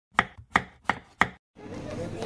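A knife chopping on a cutting board: four sharp, evenly spaced strikes, about three a second.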